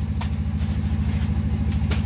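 An engine running steadily with a low, even throbbing hum. A few faint clicks and scrapes of hands working soil mix over plastic nursery trays.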